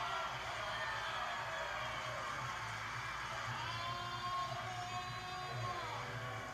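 Animated film soundtrack playing from a television speaker and picked up across a room: music and effects over a steady low hum, with one long held tone in the second half.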